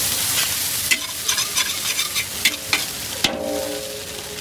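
Noodles sizzling in a hot steel wok while a metal spatula stirs and tosses them, with a quick run of sharp scrapes and clacks of the spatula on the wok. A little after three seconds in, one metal clang rings on briefly.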